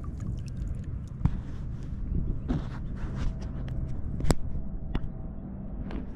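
Small splashes, drips and trickles of shallow water around a hand releasing a fish at the surface, with a few sharp ticks, the loudest a little past four seconds in, over a steady low rumble of wind on the microphone.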